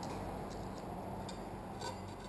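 A few faint, light ticks as window tint film is handled and trimmed at the edge of the glass, over a steady low hum.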